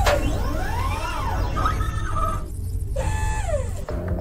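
Electronic sci-fi sound effects over a steady low rumble: a sharp hit at the start, then tones that sweep up and fall away in arches, with a short break near the middle before more falling sweeps.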